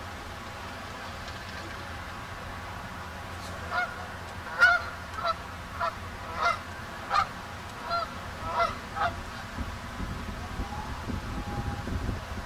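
Canada geese honking: a run of about nine short honks, one every half second or so, between about four and nine seconds in, the loudest near five seconds.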